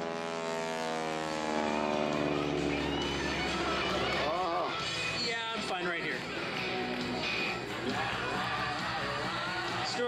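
Stunt biplane's engine droning past overhead, its pitch falling steadily over the first few seconds as the plane draws away, then fading into background music and voices.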